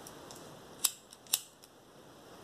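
A handheld lighter being struck: two sharp clicks about half a second apart, with fainter ticks between, as it is lit to melt and seal the end of a grosgrain ribbon.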